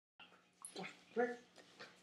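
Six-month-old German Shepherd puppy giving a few short vocal sounds, with a man's spoken command "wipe" about a second in.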